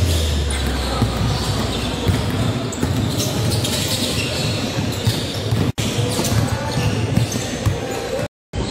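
Basketballs bouncing on a hardwood gym floor amid the echoing din of a large indoor hall, with background voices. At the very start, a falling bass note from a music track dies away.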